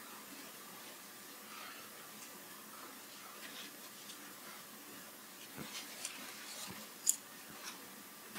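Faint rustling of a paper towel as hands press and fold it around a heated thermoplastic piece. A few soft clicks and taps come in the last few seconds, the sharpest near the end.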